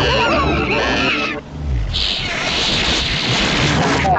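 Cartoon sound effects: loud, animal-like cries from big creatures for about the first second and a half, then a low tone sliding down and a steady hissing rush of noise.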